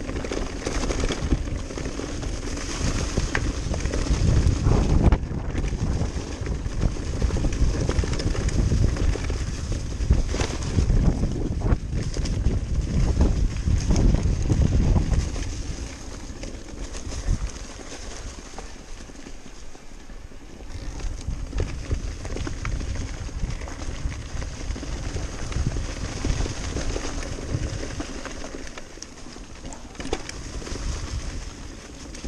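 Cube Stereo Hybrid 160 full-suspension e-mountain bike ridden fast down a dirt trail: its tyres rumble over the ground, the bike rattles and knocks over the bumps, and wind buffets the microphone. The ride is rough and loud for the first fifteen seconds or so, then smoother and quieter.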